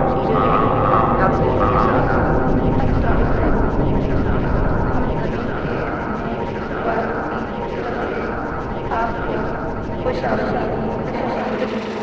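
Voice samples run through a Buchla 288v module and an Eventide H9 effects unit: a continuous, dense wash of layered, unintelligible voice fragments over a steady low rumble, easing slightly in level through the second half.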